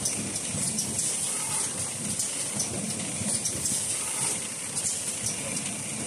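Automatic facial tissue bundling machine and its conveyor running: a steady hiss with faint, rapid ticking.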